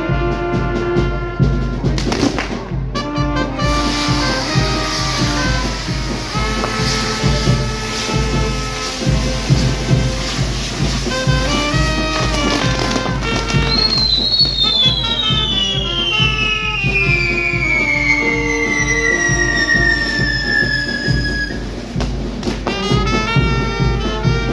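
Brass band music playing throughout, with trumpets and trombones. Midway a long whistle sounds over it, falling steadily in pitch for about seven seconds.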